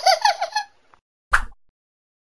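Cartoon sound effect: a quick run of about six high, rubbery squeaks in under a second, then a single sharp pop a little over a second in.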